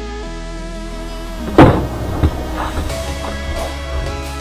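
Background music playing steadily, with a loud thump about one and a half seconds in and a smaller knock about half a second later: a skateboarder and his skateboard hitting an asphalt road in a fall.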